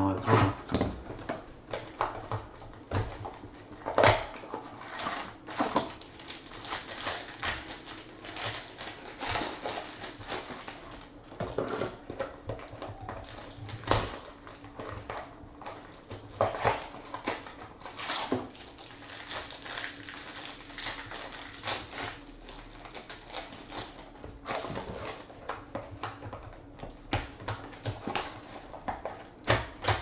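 Plastic and foil trading-card pack wrappers crinkling and tearing open, with cards being handled. The sound is a steady run of short sharp crackles, with a louder one about four seconds in and another near the middle.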